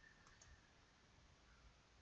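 Near silence with two faint computer mouse clicks in quick succession about a quarter second in, the click on a program's add-file button that opens a file dialog.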